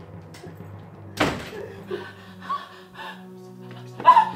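A wooden door banging shut about a second in, a single sharp knock over steady background music.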